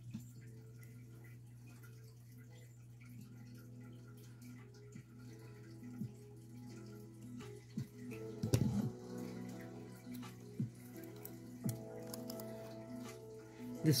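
Faint, soft background music with held tones, over a low steady hum. A few short sharp clicks and snips from small scissors trimming nail polish strips come in the second half.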